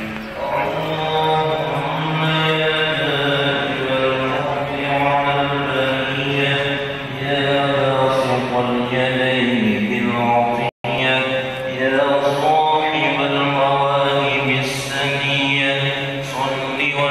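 Islamic prayer chanting, continuous and melodic with long held notes. The sound cuts out completely for a split second about eleven seconds in.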